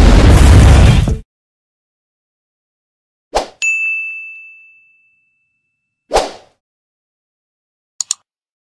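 Stock sound effects of a like-and-subscribe animation. A loud, rumbling explosion-like intro effect cuts off about a second in. After a silence come a short swish, a bright bell-like ding that rings out for about a second, a second swish, and a quick double click at the end.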